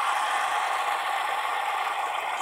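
Two stacked plastic fidget spinners spinning together on a flat top, giving a steady whir from their bearings.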